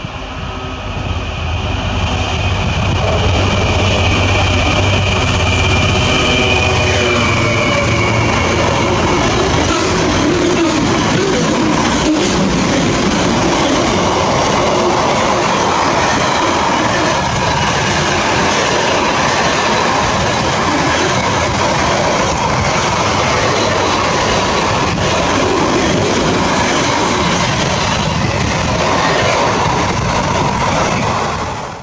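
Freight train passing: the locomotive's low drone and whine build up, then drop in pitch as it goes by about seven seconds in. After that comes a steady loud rumble of container flat wagons rolling over the rails.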